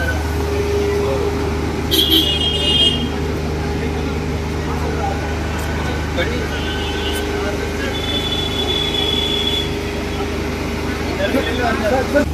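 Steady low hum of an idling vehicle engine amid road traffic, with brief higher-pitched tones about two seconds in and again near eight seconds.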